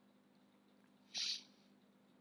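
A short, breathy exhale close to the microphone about a second in, over a faint steady electrical hum.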